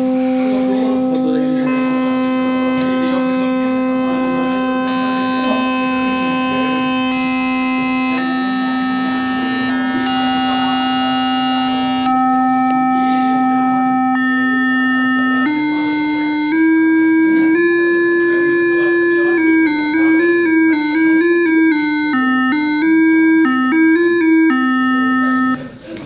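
Digital FM synthesizer running on a Digilent Basys2 FPGA board, sounding one held electronic note whose timbre switches several times, at one point turning bright and buzzy with many overtones and then thinning again. About two-thirds of the way in, it moves to a short tune of quick stepped notes that stops just before the end.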